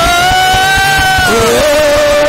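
A woman singing one long held high note that rises slightly and then falls to a lower note near the end, in a worship song over band accompaniment with a steady beat.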